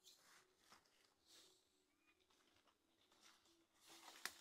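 Near silence, with two faint rustles in the first second and a half.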